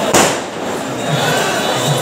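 A single firecracker bang just after the start, with a short echo, over the continuous chatter of a large crowd.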